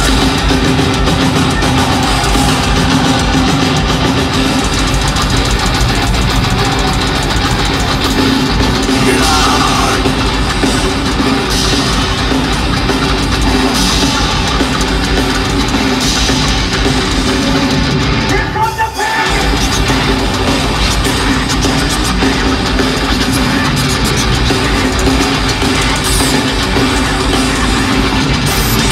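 Heavy metal band playing live at full volume, heard from the audience: distorted guitars and drums. The music cuts out for a split second about two-thirds of the way through, then comes straight back in.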